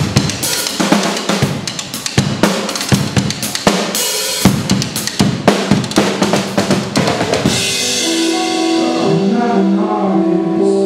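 Drum kit played hard by two drummers, a dense pattern of bass drum, snare and tom hits several times a second. About three-quarters of the way in the drumming stops and held electric guitar chords take over.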